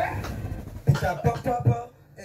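A man laughing: a breathy, wheezing stretch first, then a run of voiced laughs starting about a second in.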